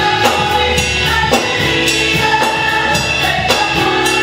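A six-voice gospel vocal group singing in harmony with live band accompaniment, drums keeping a steady beat under the voices.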